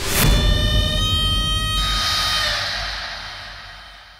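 A dramatic TV sound-effect sting: a sudden hit with a deep rumble, then a held high ringing tone. About two seconds in a hiss joins it, and both fade away.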